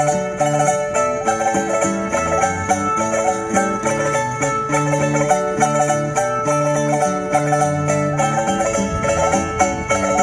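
Cavaquinho ensemble playing a Portuguese folk tune: quick strummed and plucked chords over a steady bass line.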